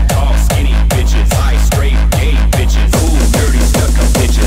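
Hardstyle dance music: a heavy kick drum about twice a second, each kick dropping sharply in pitch, under synth and hi-hats that grow brighter about three seconds in.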